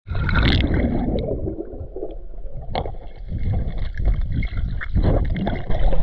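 Pool water sloshing and bubbling around an action camera held at the waterline, muffled while the lens is under water, with a few sharp pops.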